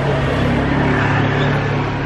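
A motor vehicle's engine running with a steady low hum, over general street noise.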